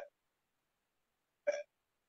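A single brief vocal sound from a person, a short hiccup-like catch of the voice, about one and a half seconds in. It falls between stretches of dead silence on the phone line.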